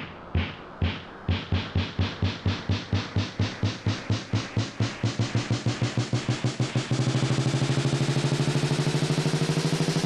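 Electronic dubstep build-up: a synthesized drum hit repeats and speeds up, from about two a second into a fast roll, growing steadily brighter. A steady low tone comes in under the roll for the last few seconds.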